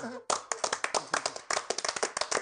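Applause at the end of a song: a small group clapping their hands, the separate claps dense and irregular, starting a moment into the clip.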